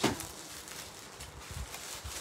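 A single sharp knock, then quiet room noise with a few soft low thumps near the end.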